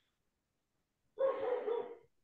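A single pitched vocal sound, under a second long, starting just over a second in, picked up over a video-call microphone.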